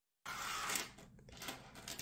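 A brief rustle of hands handling a cotton glove on the table, then fainter rubbing.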